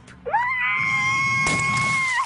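A young girl's long, high-pitched scream down the telephone: it rises sharply, then holds one note for about a second and a half before breaking off.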